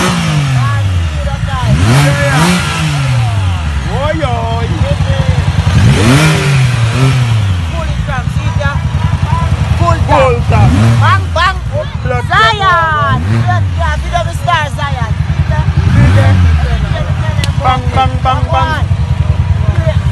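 Vehicle engine revved in repeated blips a few seconds apart, each climbing in pitch and then dropping back toward idle, with voices talking over it.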